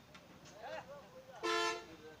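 A vehicle horn gives one short, steady honk about one and a half seconds in, over faint background voices.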